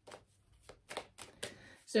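Tarot deck being handled by hand, a run of about seven quick, light card flicks.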